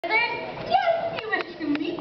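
Speech: a young performer's voice speaking stage dialogue.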